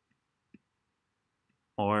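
A few faint, short clicks of a stylus tapping a tablet screen while handwriting, spaced about half a second to a second apart. A man's voice starts near the end.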